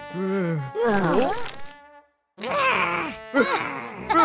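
Cartoon character voices making wordless groaning sounds, broken by a moment of silence about halfway, then more vocal noises.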